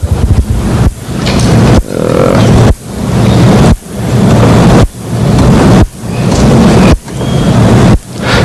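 Loud, rough noise with a strong low hum in the recording. It cuts out sharply about once a second and swells back up each time.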